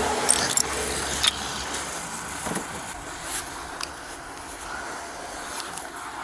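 Metal bar chipping and scraping at packed snow and ice around a car's tire: several sharp clinks and scrapes, spaced irregularly. A low steady hum underneath fades out in the first second and a half.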